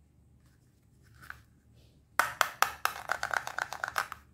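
Hard plastic toy food pieces being handled, quiet at first, then a quick run of sharp clicks and taps as the pieces knock together in the hands.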